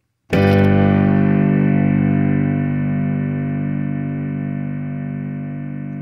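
A G chord strummed once on guitar about a third of a second in, then left to ring and slowly fade.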